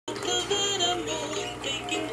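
Electronic toy zoo playset playing a song with a singing voice, the sung notes moving step by step.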